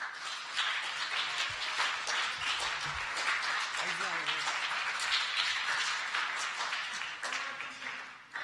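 Audience applauding in a hall: many hands clapping together, starting suddenly and tapering off near the end, with a voice or two heard briefly through it.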